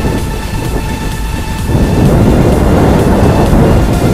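Loud rumbling wind buffeting on an outdoor camera microphone, building up about two seconds in, over quieter background music.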